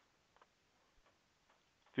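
A few faint clicks of a computer mouse as pages are clicked through, over quiet room tone.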